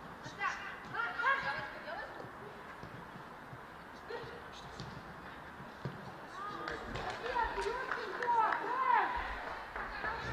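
Players' shouts and calls on an open-air football pitch, heard through the field microphone with a sharp thud just before six seconds in. After it come louder, excited shouts from the scoring side as the goal goes in.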